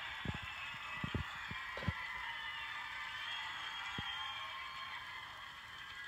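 Studio audience of children cheering and applauding, heard thin and lacking bass through a computer speaker, with a few brief low thumps. The cheering eases slightly over the last couple of seconds.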